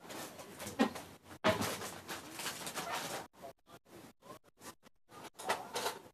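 Rustling and scraping from household items being handled for about three seconds, broken by a brief pause, then a few scattered light clicks and knocks.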